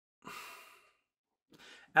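A man's soft sigh, a single breathy exhale lasting about half a second, followed near the end by a fainter quick breath in.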